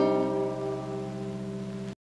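Nylon-string classical guitar's final chord ringing and slowly dying away, cut off suddenly just before the end.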